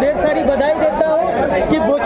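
Speech only: several people talking over one another, continuous chatter.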